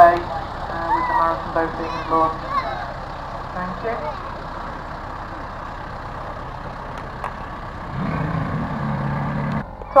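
Tractor engine running at a boat slipway, while it launches a race power boat from its trailer; the engine grows louder and deeper about eight seconds in. Voices talk over it during the first few seconds.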